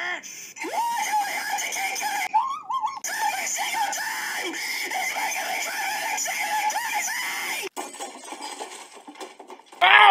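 A cartoon character's loud, shrill rage scream, wavering in pitch and running for about seven seconds before cutting off suddenly.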